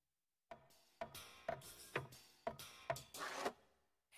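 Cartoon sound effects of the Pixar Luxo lamp hopping: a series of about seven sharp clanks with a short ring, roughly two a second, starting about half a second in and stopping shortly before the end.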